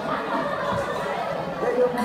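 Several people talking over one another in a hall: mixed chatter with no one voice leading.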